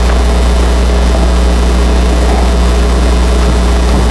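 Loud, steady low-pitched electrical hum from the lecture hall's sound system.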